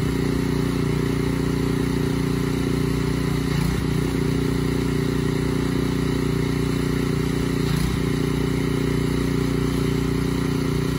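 A small engine running steadily at one constant pitch, with a brief waver about four seconds in and again near the eighth second.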